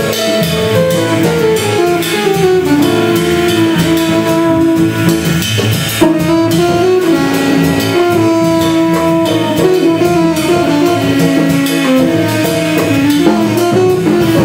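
Avant-garde jazz quintet playing live: saxophone and an electronic valve instrument (EVI) in long held lines that slide between pitches, over drum kit, upright bass and piano.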